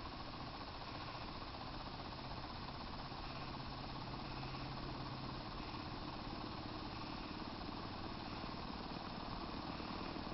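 Homemade electrostatic corona motor running unloaded after being revved up, its shaft spinning a small ring magnet. It gives a faint, steady hum and hiss; a low hum fades about halfway through and a higher one grows toward the end.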